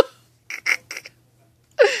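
A few short breathy giggles, then a laugh near the end.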